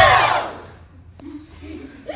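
A group of children giving one loud final shout together, falling in pitch and fading within about half a second as the song ends. A single sharp click follows about a second in.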